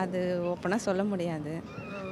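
A woman's voice speaking, with long held syllables that waver in pitch.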